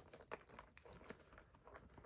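Faint rustling and small handling clicks: a fabric sunglasses dust bag being pushed into a small patent-leather handbag.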